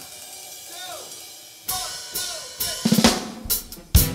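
A live band's drum kit kicks off a song. A few scattered snare and cymbal hits come about halfway through, then a fast run of snare, bass drum and cymbal strokes, with the rest of the band coming in near the end.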